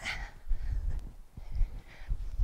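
A woman's forceful exhale as she swings a kettlebell, followed by faint breathing and low, uneven rumble from the swinging movement.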